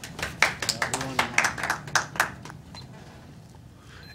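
A few people clapping briefly, a dozen or so irregular claps that die away about two and a half seconds in.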